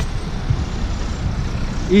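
Road traffic noise: a steady low rumble with hiss.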